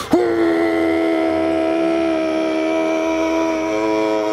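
Added sound effect: a whistle-like chord of several held tones that swoops up sharply at the start, then holds steady.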